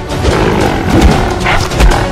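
An animal roar over loud action music, with low thumps about a second in and near the end.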